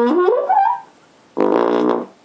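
Trombone played through a Softone practice mute stretched over the bell: a quick rising run of notes, then after a short pause one held lower note.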